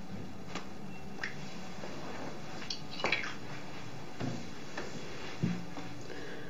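Bath water in a tub, with a few faint small splashes and drips over a quiet steady background; the clearest comes about three seconds in.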